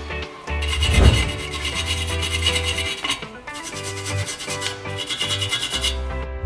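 Hand wire brush scrubbing rust and dirt off the pad seats of a front brake caliper carrier, in two spells of quick back-and-forth strokes, with background music underneath.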